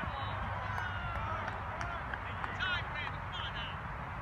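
Scattered shouting voices of soccer players and onlookers across an open field, several calls overlapping and rising and falling, over a steady low rumble.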